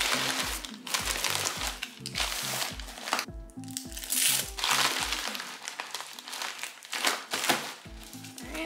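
Plastic poly bubble mailer crinkling as it is handled, its adhesive strip peeled and the flap pressed shut, over background music with a steady beat.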